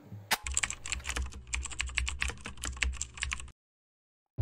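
Computer keyboard typing sound effect: a rapid run of key clicks for about three seconds after an opening click, then it cuts off suddenly.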